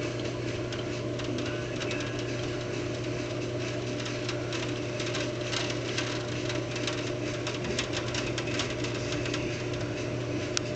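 Rain during a thunderstorm: an irregular patter of small drop ticks over a steady low hum, with no thunder.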